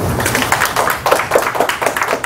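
Audience applauding, a dense patter of many hands clapping.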